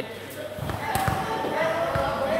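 Background voices of players and onlookers in a large hall, with a few dull thuds of a volleyball bouncing.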